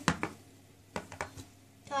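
Plastic toy horse's hooves tapping on a board arena as it is trotted along by hand: a couple of sharp taps near the start, then three quick ones about a second in.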